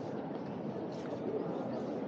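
Crowd of people talking indistinctly all at once, a steady babble of many voices, with a few faint ticks.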